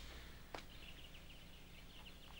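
Near silence after the band stops playing: a faint steady low hum with a row of faint, short high chirps and a single click about half a second in.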